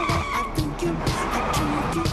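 Pop music with a steady beat, with car tyres squealing over it in the second half.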